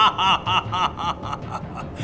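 A man's triumphant, gloating laugh: a quick run of "ha-ha-ha" pulses, about five a second, that trail off and fade out a little after a second in.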